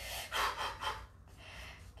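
A woman's breathy exhalations: a few short, unvoiced puffs of breath in the first second, then faint room tone.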